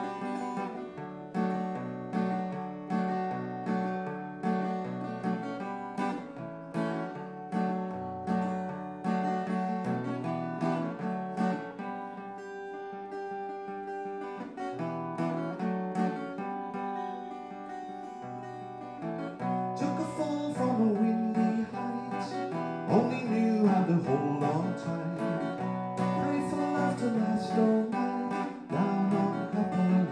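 Electro-acoustic guitar played solo, strumming and picking chords in a steady rhythm during an instrumental break between sung verses.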